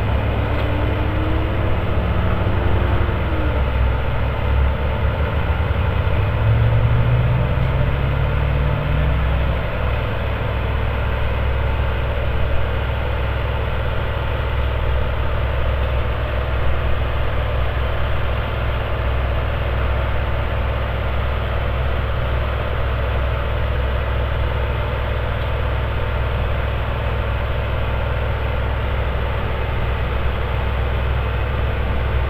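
Diesel engine of a railway maintenance-of-way track machine running steadily at low revs. Its pitch rises briefly around seven to ten seconds in.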